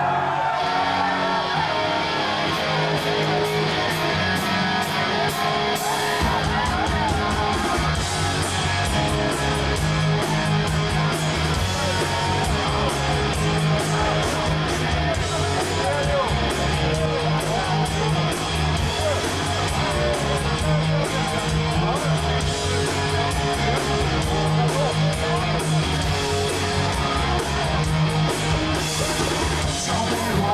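Punk rock band playing live through a club PA: an electric guitar riff opens the song, and cymbal hits come in. About six seconds in, bass and full drums join, and the whole band plays on together.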